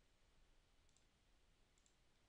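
Near silence with two faint computer mouse clicks, about a second in and near the end, each a quick double tick.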